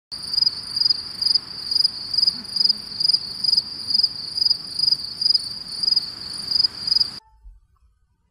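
Insect chirping: high chirps repeating about twice a second over a steady hiss, cutting off suddenly near the end.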